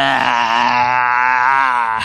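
A man's long, drawn-out groaning "uhhh", one continuous vowel held on a steady low pitch.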